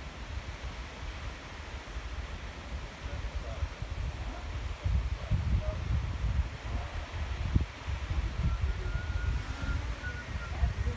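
Wind buffeting the microphone in uneven low gusts that grow stronger about halfway through, over a steady outdoor hiss.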